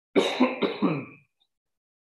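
A man clearing his throat in three quick, rough bursts lasting about a second.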